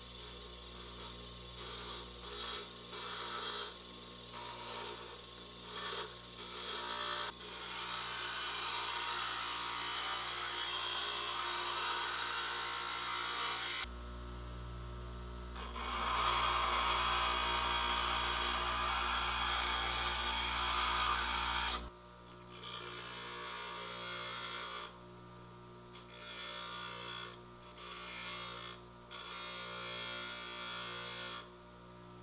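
Bench grinder running with a steady motor hum while a steel chisel is pressed against the grinding wheel in repeated passes, grinding away its beveled sides to form a fishtail. The grinding noise starts and stops with each pass; the longest and loudest stretch comes around the middle.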